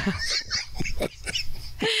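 A man and a woman laughing together in short breathy bursts, with a longer laugh sliding down in pitch near the end.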